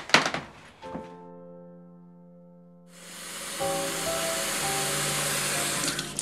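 Background music of held chords, with a thud just after the start. About halfway in, water from a kitchen tap starts running into a stainless kettle: a steady rushing hiss over the music.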